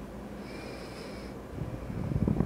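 Low, steady room hum, with a faint thin high whine lasting about a second in the middle.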